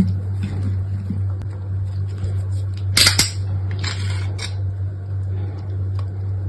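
Utility knife blade cutting into a bar of soap, with a loud crisp crunch about three seconds in and a second scraping cut about a second later, over a steady low hum.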